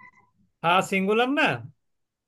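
Speech only: a person says a single short word, about half a second in, ending with a falling pitch.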